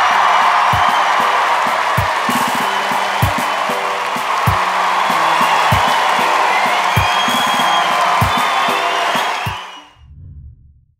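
Audience cheering and applauding over music with a slow, steady beat. It all fades out near the end.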